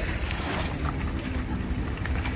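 Wind buffeting the microphone with an uneven low rumble, over the wash of the shallow bay water, with a brief rush of noise about half a second in and faint voices behind.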